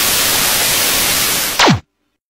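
Television static sound effect: a loud, steady white-noise hiss. About one and a half seconds in, a quick falling tone sweeps down, and the sound cuts off suddenly.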